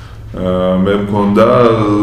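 A man speaking, drawing out one long held vowel that begins about a third of a second in and bends in pitch near the end.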